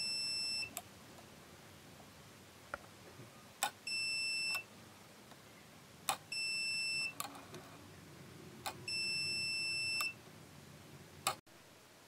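The small relay in an antique Nernst lamp's base clicks in and out about every two and a half seconds. A steady high electronic beep of under a second, like a test meter's continuity beeper, sounds between each pair of clicks. The cleaned relay is switching properly.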